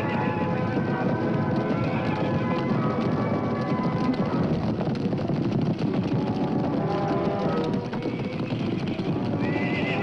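A herd of horses galloping, a steady rush of many hoofbeats with horses whinnying, over dramatic orchestral score music.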